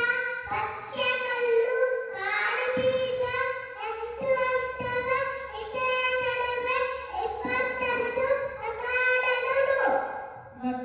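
A young boy chanting a shloka into a microphone in a sing-song melody, his high voice holding long notes in short phrases with brief breaths between them.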